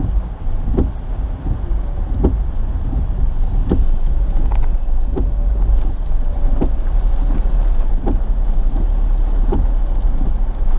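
Inside a moving car in the rain: a steady low road rumble, with a soft regular thump about every one and a half seconds.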